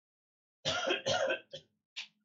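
A person coughing: two coughs close together, then two short, fainter ones.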